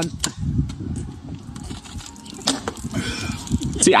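Two beer cans being shotgunned: a sharp pop as a can is cracked open, a couple of seconds of fast gulping, then a thunk about two and a half seconds in as an emptied can hits the ground. The thunk sounds like there is still beer left in the can.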